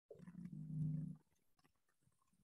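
A man's voice making a low, held sound for about a second, dying away just past the middle.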